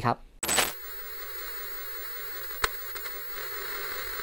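Analogue video static sound effect: a sudden burst of noise about half a second in, then a steady tape hiss with a single sharp click partway through.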